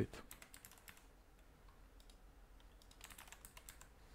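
Faint computer keyboard typing: a few scattered key clicks in the first second, then a quick run of key presses about three seconds in as digits are entered into a form field.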